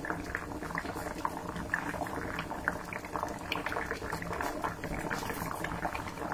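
Two pots at a rolling boil: corn cobs in water and a pot of palm sugar syrup, bubbling steadily with many small irregular pops.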